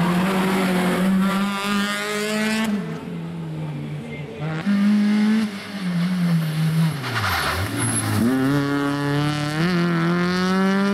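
Peugeot 206 rally car's four-cylinder engine revving hard, its pitch climbing and then dropping at each gear change. About two-thirds of the way through, the note falls away low as the car slows, then climbs again as it pulls away.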